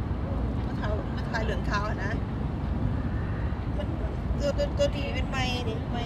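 Short bursts of people talking, once early on and again near the end, over a steady low rumble of outdoor background noise.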